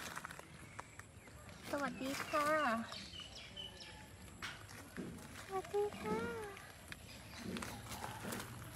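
A woman's high, sing-song voice greeting a cat twice. Between the greetings come a few faint, short, high chirps.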